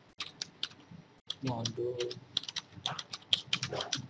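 Typing on a computer keyboard: an irregular, fast run of key clicks.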